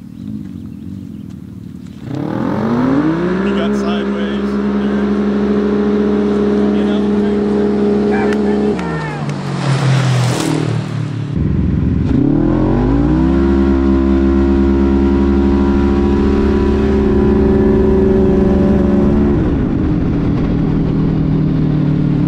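Side-by-side UTV engines launched at full throttle: they rev up, hold a steady high pitch as the CVT pulls, then drop off about nine seconds in, with a short rush of noise just after. The Polaris RZR RS1's 999 cc ProStar parallel-twin is then heard from inside its cockpit, revving up again, holding steady at full throttle, and settling lower near the end.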